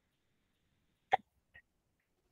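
Near silence on a video-call audio line, broken about a second in by one brief, sharp sound and a much fainter tick just after.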